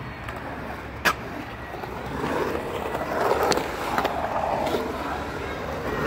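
Skateboard wheels rolling and carving across a concrete bowl, the rolling noise swelling and fading with the turns, with a sharp click about a second in.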